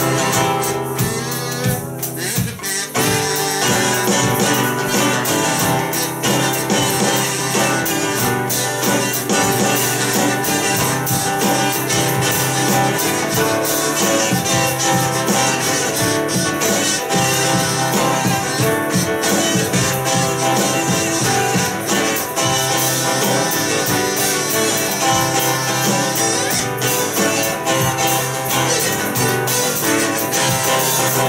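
Acoustic guitar strummed steadily, with a harmonica playing the melody over it in an instrumental passage of a song.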